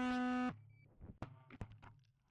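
5-inch FPV quadcopter's brushless motors whining at one steady pitch, then cutting out suddenly about a quarter of the way in. Several light knocks follow as the quad comes down and tumbles to rest on the ground.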